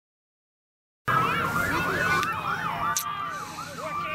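Several emergency-vehicle sirens sounding at once. One yelps rapidly up and down, about four times a second, while others hold a steady or slowly rising tone. They cut in suddenly about a second in, after silence.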